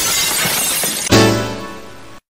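A loud crash sound effect like breaking glass, with a second heavier hit about a second in that then fades out.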